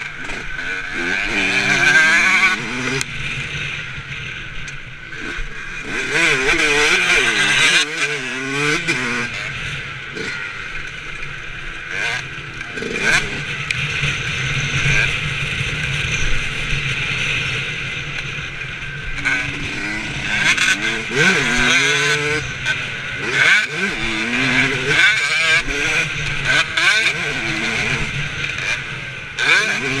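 Motocross bike engine on the move, revving up and falling back again and again through corners and straights, with wind noise on the bike-mounted microphone.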